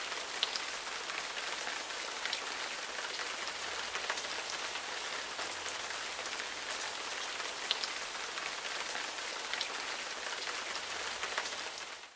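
Heavy rain falling steadily, an even hiss with scattered sharper drop ticks. It fades out at the very end.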